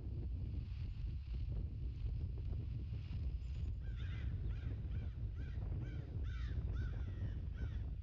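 A bird giving a series of about nine short, arched calls, roughly two a second, starting about halfway through, over a steady low rumble of wind on the microphone.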